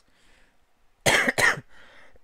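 A man coughing twice in quick succession about a second in, short harsh coughs from a chest cold with phlegm and a sore throat.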